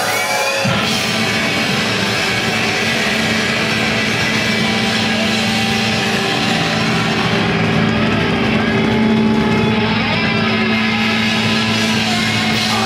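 Live hardcore punk band playing loud and fast: distorted electric guitar, bass guitar and drum kit, with the full band coming in under a second in.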